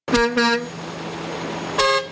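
Truck horns honking as a parade of tow trucks and a semi tractor pass: two short blasts, a steady rushing noise of passing traffic, then a longer horn blast near the end.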